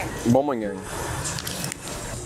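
A short man's vocal sound, falling in pitch, about half a second in, followed by a steady low street background.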